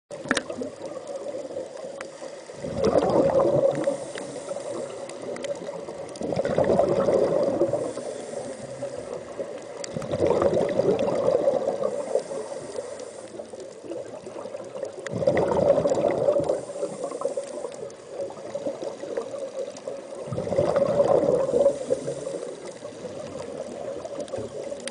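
Scuba diver's breathing heard underwater: five bubbling exhalations through the regulator, about four to five seconds apart and each lasting a second or two, over a steady hiss of water.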